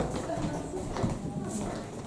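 Footsteps of several people walking on a hard floor, an uneven run of short knocks, with low voices underneath.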